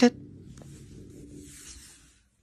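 Low rumbling of a small ball rolling across a wooden floor, with a faint scraping hiss in the second half.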